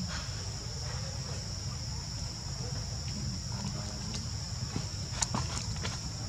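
Steady high-pitched drone of insects over a low background rumble, with a few sharp clicks near the end.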